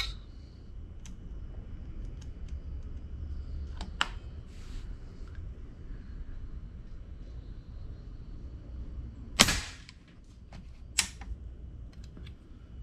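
A moderated PCP air rifle, a custom G3, fires a single shot about nine and a half seconds in, the loudest sound here, late in its air fill as the cylinder pressure falls. Two smaller sharp clicks come about four seconds in and about a second and a half after the shot.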